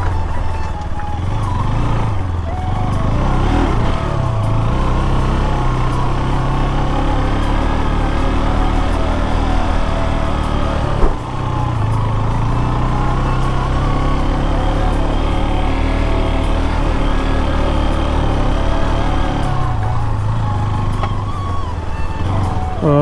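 KTM RC 200 motorcycle engine running at low speed through slow traffic, heard from the rider's helmet camera, with background music over it. A single sharp knock about halfway through.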